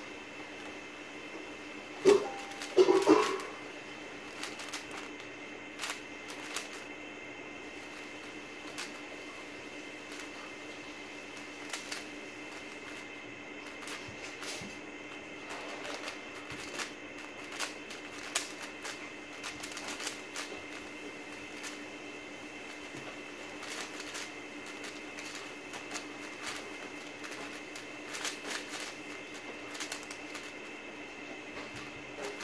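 A WuQue M 4x4 speedcube being turned fast during a timed solve: a stream of light plastic clicks and clacks as its layers snap round. About two seconds in there is a louder clatter of knocks.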